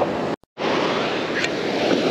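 Ocean surf breaking and washing up the beach, with wind on the microphone; the sound drops out for an instant about half a second in.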